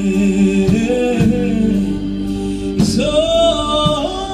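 Live band playing a soul song: a woman's lead vocal holds sung notes over electric bass, keyboard, electric guitar and hand drum, one note sliding up and held about three seconds in.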